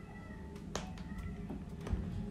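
A domestic cat giving a faint, drawn-out meow, with two sharp knocks, one about midway and a louder one near the end.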